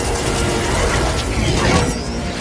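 Action-movie battle sound effects: a dense, continuous metallic mechanical clatter over a low rumble.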